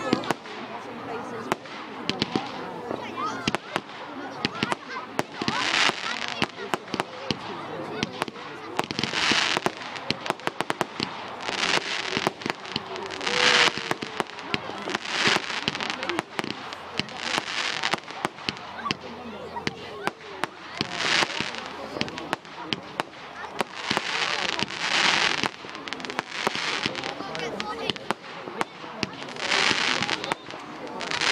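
Aerial fireworks going off one after another: many sharp bangs and crackles, with a short rushing hiss every few seconds.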